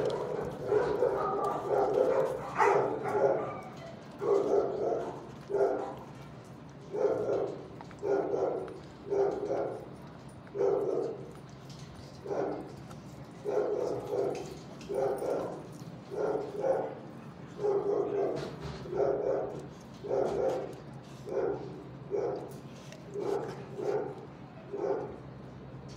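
A dog barking over and over, about one to two barks a second, with no let-up.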